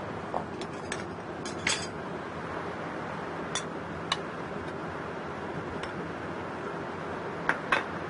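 A metal spoon clinking against a ceramic bowl and a glass bowl as chopped lychee is scooped from one into the other: a handful of scattered light clinks, the sharpest a pair about one and a half seconds in and another pair near the end.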